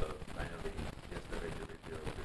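Indistinct, low speech from someone away from the microphones, too unclear to make out words.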